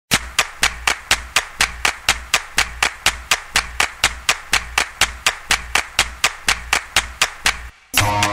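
Electronic percussion beat: an even run of sharp clap-like clicks, about four and a half a second, over a low bass pulse. It cuts off suddenly near the end.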